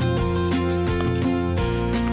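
Background music: strummed acoustic guitar chords.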